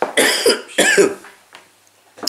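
A man coughing into his hand, two short coughs within the first second.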